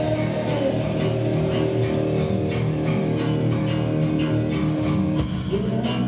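Rock band playing live: electric guitar holding chords over a steady drum-kit beat, the chord changing near the end.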